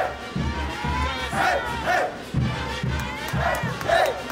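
Festival dance music with a steady, even drum beat, overlaid by the dancers' shouts and short rising-and-falling calls.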